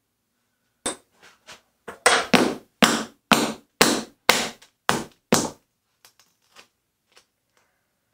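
A hammer tapping on a scored quarter-inch glass mirror to try to run the break along the score line. There is one tap, then a quick series of about nine sharp strikes at roughly two a second, then lighter taps that fade out near the end.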